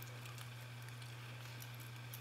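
Faint, scattered small metallic ticks and scratches from a Bogota rake working the pins of a TESA euro-profile pin-tumbler cylinder under tension, over a steady low hum.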